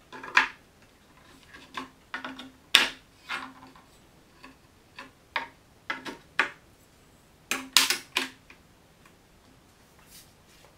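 Irregular clinks and knocks of steel rulers and small metal jig pieces being handled and set down on a wooden tabletop, some with a brief metallic ring. The loudest knocks come about three seconds in and again near eight seconds.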